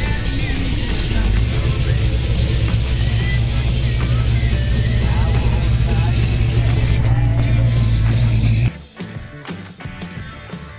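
Dodge Charger's V8 engine running with a loud, steady deep rumble and people's voices around it; the sound cuts off suddenly near the end.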